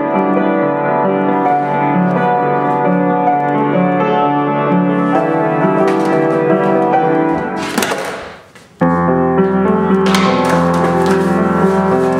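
Piano-led music. It fades out about eight seconds in, and a new piece with a deeper bass line starts at once.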